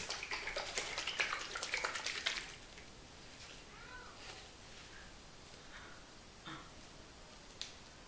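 Plastic spray bottle of hair spritz being shaken, the liquid sloshing and the bottle rattling in quick strokes for about two and a half seconds. Then it goes quiet, with a single sharp click near the end.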